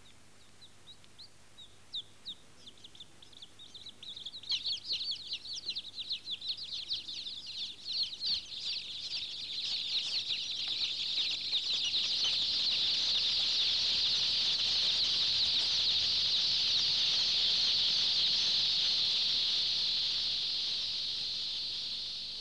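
A large flock of baby chicks peeping. It starts as a few scattered high cheeps and builds into a dense, continuous chorus of chirping, which eases slightly near the end.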